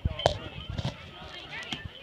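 A sharp knock as a small child's tee-ball bat strikes the ball off the batting tee, about a quarter second in, over chatter from spectators.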